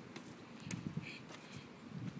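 Phone handling noise with soft footstep thumps, and a short breath close to the microphone about a second in.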